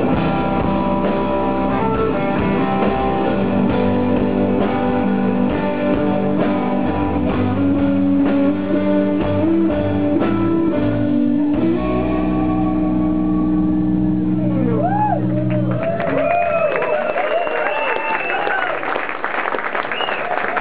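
Live rock band playing electric guitars, bass and drums, ending a song on a long held chord that stops about three-quarters of the way in. Crowd noise with high sliding whistle-like tones follows.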